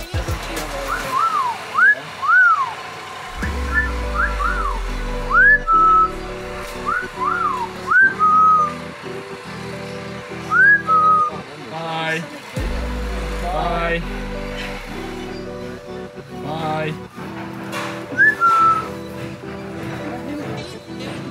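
An Amazon parrot whistling: short slurred whistles that rise and fall, several ending in a brief held note, repeated every second or two, with a few harsher calls between them. Background music runs underneath.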